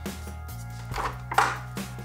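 Background music, with a few light knocks and clicks of a plastic wall adapter and coiled USB cable being lifted out of a plastic packaging tray; the sharpest knock comes about a second and a half in.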